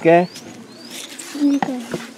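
Birds calling: a few short, thin rising whistles, and a low cooing note about a second and a half in.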